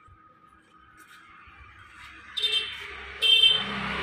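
Two short blasts of an electric horn, each about half a second long and about a second apart, after a quiet start.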